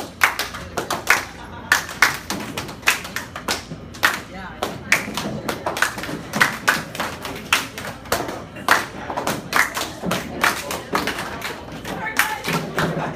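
Hand clapping in a steady rhythm, sharp separate claps about two to three a second, with voices underneath.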